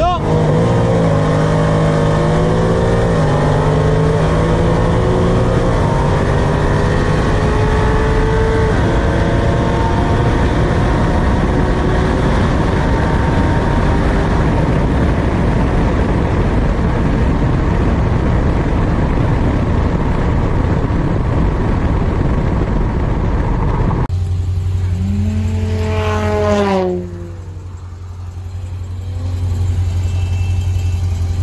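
A nitrous-fed V8 sedan at full throttle in a highway roll race. Its pitch climbs and drops back at upshifts about every three seconds, then settles into a steady high-speed rush of engine, wind and road noise. About six seconds from the end the sound changes to a lower, steady engine hum with a short rising-and-falling tone.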